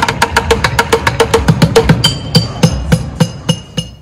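Street bucket drumming: drumsticks beating upturned plastic buckets in rapid, even strokes, about nine a second. About halfway through, ringing metallic tones join the beat.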